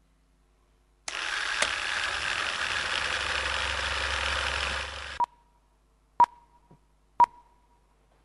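A steady rushing noise lasting about four seconds that cuts off abruptly, followed by three short beeps about a second apart.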